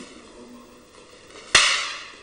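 One sharp crack of long wooden staffs striking each other, about one and a half seconds in, dying away over a short echo.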